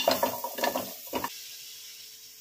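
Chunks of raw cassava tumbling into an empty metal pot: a dense clatter with the pot ringing, dying away about a second and a half in.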